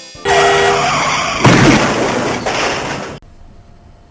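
A loud, noisy sound effect with a few steady tones at first. It surges louder about a second and a half in and cuts off suddenly a little past three seconds.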